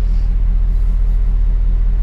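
2008 GMC Sierra 1500's V8 idling steadily through an aftermarket exhaust with shorty headers, heard from inside the cab as an even, deep rumble.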